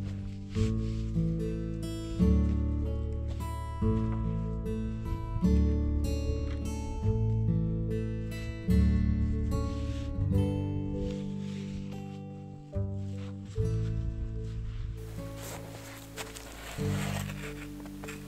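Background music: a slow melody of plucked notes, each ringing and fading. About three seconds before the end, a rustling noise joins it.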